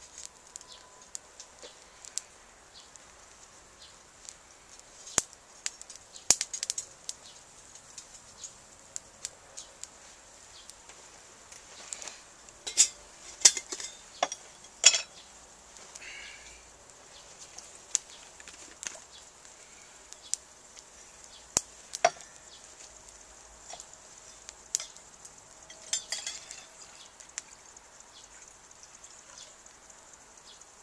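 A small stick fire catching in a homemade wood-burning stove made from a metal dish-drainer basket, crackling with scattered sharp pops, busiest around the middle, and light metallic clinks as sticks knock against the stove.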